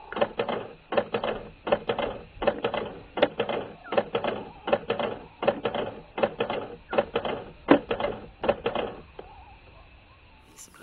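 Camera shutter firing in a long continuous burst, about two to three clicks a second, stopping near the end.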